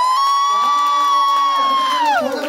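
Audience cheering as the song ends, led by one long high whoop held steady that drops away at the end, with a second, lower voice joining in.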